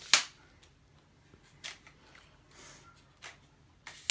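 A folded camera tripod being handled: one sharp snap of its fittings right at the start, then a few light clicks.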